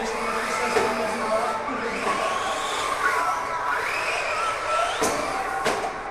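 Radio-controlled model cars' motors whining, several at once, the pitch rising and falling as they speed up and slow down. Two sharp clicks come near the end.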